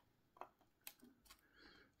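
Near silence, with three faint, short clicks: hands handling a 3D-printed plastic fuselage part.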